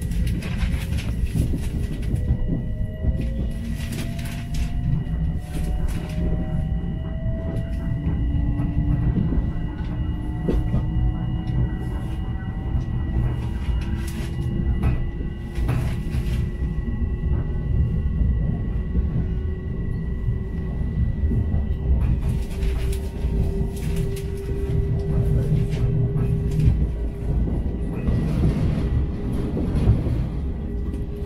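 Electric commuter train heard from inside the passenger car, pulling away and gathering speed: a steady rumble of wheels on rail with a motor whine that slowly rises in pitch. Occasional sharp clicks come through the rumble.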